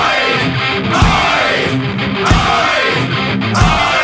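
Heavy metal band music: distorted electric guitar riff over drums, with a heavy accented hit roughly every second and a quarter, each followed by a falling sweep in pitch.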